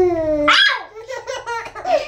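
Baby laughing in a string of short giggles, with a high squeal about half a second in, right after a young child's playful shout of "Ow!".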